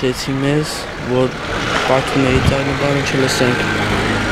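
Speech: a boy talking in Armenian into an interviewer's microphone, in short phrases over a steady low rumble.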